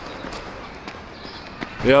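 Sneakered footsteps of a person jogging on a paved footpath, a few light steps over a steady outdoor hiss.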